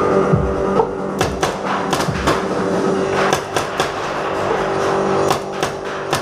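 Music plays throughout, overlaid by about a dozen sharp cracks in quick clusters, from paintball-style tagball markers firing.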